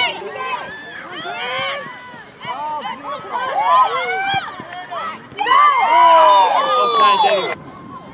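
Several voices at a soccer game shouting and calling out over one another, with no clear words. The yelling is loudest about five and a half seconds in and cuts off suddenly near the end.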